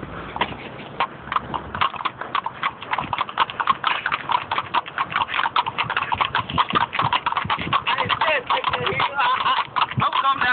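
Horses' hooves clip-clopping on a paved road as several horses walk together, the strikes quick and overlapping.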